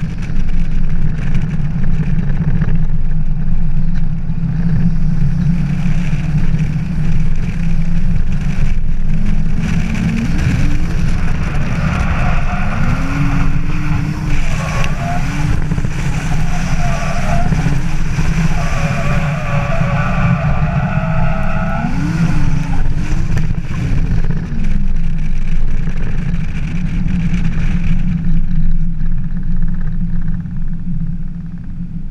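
A Nissan C35 Laurel drift car's engine heard from its own onboard camera: a heavy low rumble throughout, with the revs rising and falling several times in the middle stretch.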